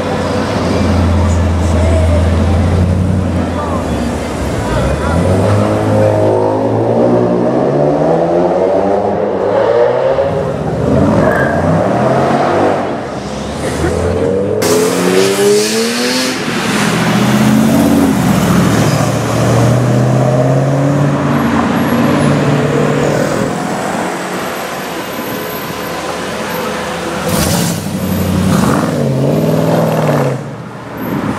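Renntech-tuned Mercedes E55 AMG's supercharged V8 revving and accelerating hard in several separate passes, its pitch climbing as it pulls away and falling off between runs.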